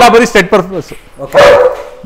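A dog barks once, loudly, about one and a half seconds in.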